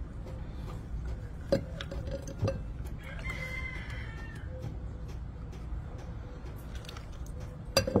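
Plastic hand-held citrus press squeezing limes over a glass, with sharp clacks about a second and a half in, again a second later, and near the end. A rooster crows faintly for about a second and a half in the middle.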